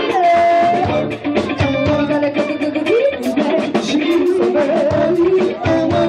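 Live band playing: a woman singing held, bending notes into a microphone over electric guitar and a steady drum beat.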